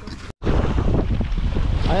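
Wind rumbling on the microphone over choppy sea water, starting abruptly about a third of a second in. A man's voice begins at the very end.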